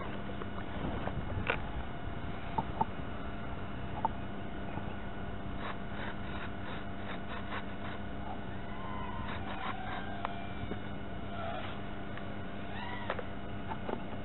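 Faint outdoor background noise with a steady electrical hum, a few light clicks, and some short chirping calls later on.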